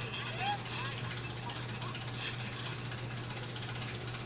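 Steady low hum and hiss from a television's sound recorded off the screen, with a faint voice saying "oh, oh" at the start.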